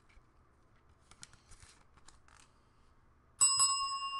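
Near silence with a few faint handling clicks, then about three and a half seconds in a bell is struck once and rings on with several clear tones, slowly fading: the signal for a big hit.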